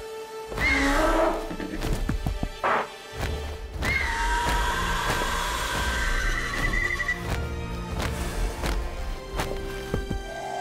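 Background music from a children's show score, with a pterosaur's screeching call about half a second in.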